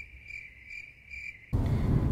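A comic 'crickets' sound effect: a steady high cricket trill pulsing about three times a second. It cuts off suddenly about one and a half seconds in, giving way to the low rumble of a car cabin.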